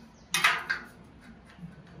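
A short metal-on-metal scrape about a third of a second in, fading within half a second: a pointed steel scriber scratching a mark onto a square steel tube along a steel ruler.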